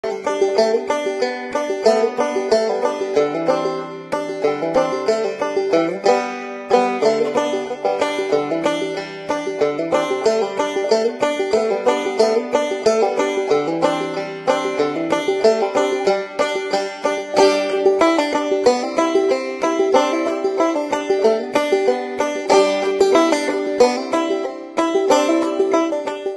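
Background music: a fast plucked-string instrumental with rapid picked notes throughout.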